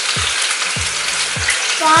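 Food frying in olive oil in a pan, a steady sizzle, with a low thud repeating about every half second underneath. A voice comes in near the end.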